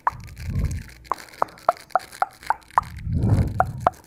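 A quick, evenly spaced run of short pitched pops, like water drops, about four a second. Twice, low rushing swells rise under them as a hand sweeps close to the microphone.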